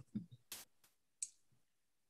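Three faint computer mouse clicks in the first second and a half, over near silence.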